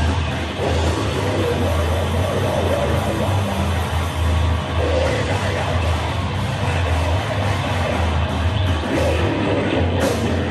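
Live heavy band playing loudly: electric guitar and drum kit in a dense, continuous wall of sound.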